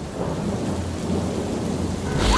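Thunder-and-rain sound effect: a low rumble of thunder under a steady hiss of rain.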